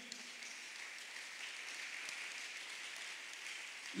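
Congregation applauding, a faint, steady, even patter of many hands: an 'offering of palms', applause given to God in worship.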